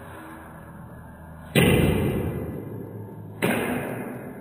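Table tennis ball strikes in slowed-down audio: two hits, about a second and a half in and again near the end, each stretched into a low thud that fades away slowly over more than a second.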